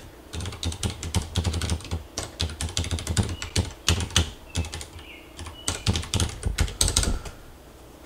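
Typing on a computer keyboard: a run of irregular key clicks, quick bursts with short gaps, stopping shortly before the end.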